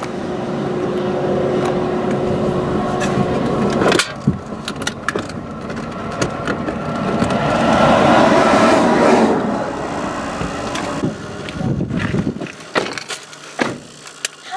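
Highway traffic passing close by: a pickup towing a travel trailer goes past at the start with a steady drone, and a second vehicle swells to the loudest point about eight seconds in before fading. Near the end the noise drops away and a few sharp clicks are heard.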